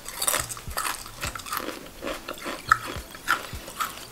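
Close-up crunching of a potato chip being chewed: a quick, irregular run of crisp crunches.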